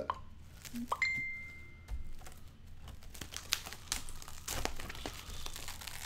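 Clear plastic bag crinkling as it is handled, with many small irregular crackles. Just before a second in there is a sharp knock, followed by a thin high tone lasting about a second.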